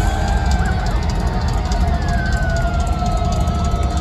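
Heavy metal band playing live and loud, heavy bass and drums under long held notes, one of them gliding slowly down in pitch.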